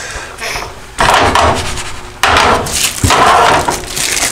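Plastic wrappers of individually wrapped cheese slices crinkling in loud bursts as the slices are peeled out, with a sigh at the start.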